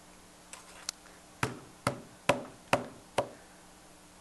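A short run of sharp knocks: a faint click, then five evenly spaced taps a little under half a second apart, each fading quickly.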